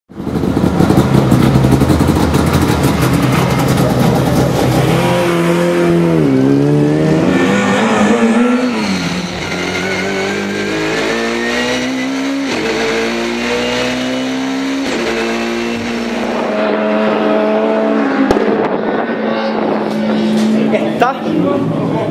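BMW touring race car's engine heard from inside the cockpit under hard acceleration on track. The pitch climbs through the revs and drops back at each gear change, several times over.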